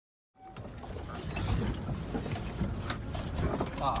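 Cabin noise inside a Volkswagen Vanagon Syncro crawling over a bumpy, rocky dirt trail: a steady low rumble with irregular rattles and knocks from the van's body and interior. It starts about half a second in.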